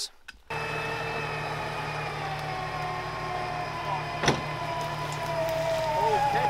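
Electric 4WD recovery winch running under load on a double-line pull to right a rolled-over Land Rover Discovery; its motor whine sinks slowly in pitch as it takes the strain. It starts about half a second in, over a steady low hum, with one sharp click about four seconds in.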